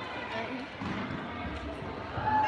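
Indistinct background voices and crowd noise in a large gymnasium hall, with a low rumble and some dull thuds in the second half.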